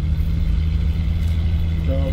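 Tour bus driving along, with its engine and road noise making a steady low drone inside the cabin.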